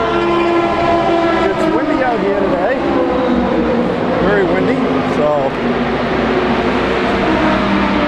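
Race car engines running at speed on the track during practice, heard from the pit garages: a loud, steady multi-toned engine note whose pitch slowly falls as the cars go by.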